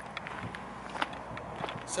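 Light footsteps and scuffs on a tarmac surface, a scattering of soft ticks over a faint steady outdoor background.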